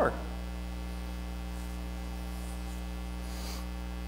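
Steady low electrical mains hum with a stack of overtones, carried on the audio feed during a pause in the talk.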